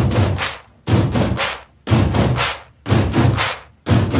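Heavy impact hits from an animated end card, about one a second, each a deep thud with a hissing tail that fades within about half a second.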